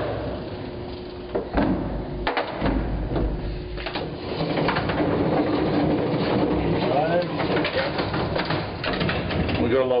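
Silo elevator car running up its shaft: a steady low rumble and hum, with sharp knocks and rattles from the cage in the first few seconds.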